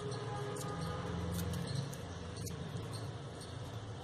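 Crepe paper being twisted between the fingertips, a faint crinkling with a few small ticks, over a steady low hum.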